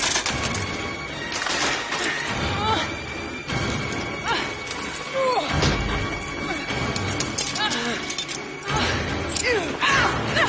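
Film fight soundtrack: grunts and cries from a violent struggle over dramatic score music, with repeated heavy impacts and crashes of breaking glass.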